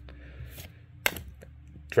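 Pokémon trading cards being slid through a stack in the hand: a soft scrape of card on card about half a second in, then a short, sharp flick just after a second.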